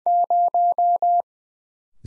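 Morse code sidetone at about 700 Hz sending five dashes in quick succession at 20 words per minute: the digit zero.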